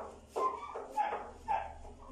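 A dog barking: four short barks about half a second apart.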